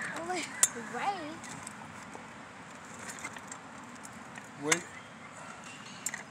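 Voices saying "wait" at the start and again near the end. In between there is only faint steady outdoor background noise, with a few small clicks.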